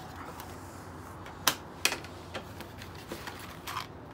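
Objects being handled in and around a cardboard box: two sharp clicks about a second and a half in, a few lighter ticks, and a short run of clicking and rustling near the end.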